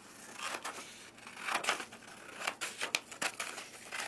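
Scissors cutting through a sheet of white paper: a series of separate snips with the paper rustling as it is handled.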